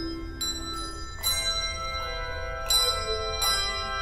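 Handbell choir playing: groups of bells struck together ring on in overlapping chords, with fresh strikes coming every second or so.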